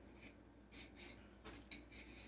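Near silence: room tone, with a few faint soft ticks around the middle.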